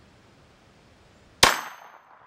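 A single .22 Long Rifle shot from a Cobra two-shot derringer, sharp and loud, about one and a half seconds in, followed by a brief high-pitched ring from the AR550 armor steel target being hit.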